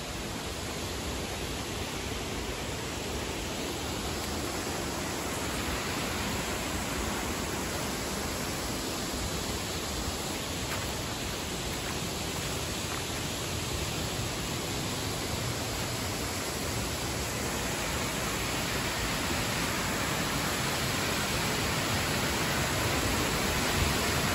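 Steady rush of water from a waterfall, with no distinct events, growing gradually louder.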